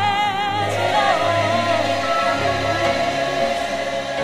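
Gospel worship music: a singer holds a note with wide vibrato, then sings a short sliding phrase, over sustained chords and a bass note that fades out about two and a half seconds in.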